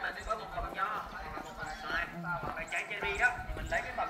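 Indistinct voices of people talking, too unclear to make out words.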